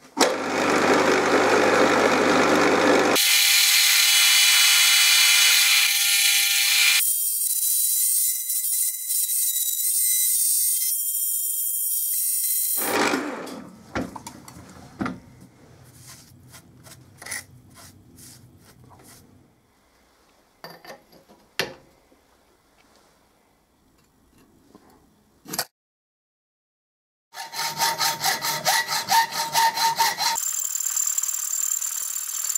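An end mill on a milling machine cutting steel square tubing, loud and with a steady whine, for about the first thirteen seconds. Then come quiet brushing and scattered light clicks. Near the end there are fast, regular hand-sawing strokes on the tube.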